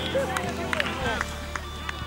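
Men's voices calling out on an outdoor football pitch just after a goal, with several sharp smacks scattered through and faint music underneath.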